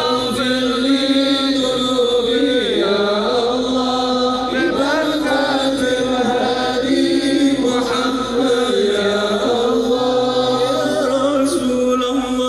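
Sholawat, Arabic devotional praise of the Prophet, sung by many voices together through a loudspeaker system, in long held melodic lines that slide between notes.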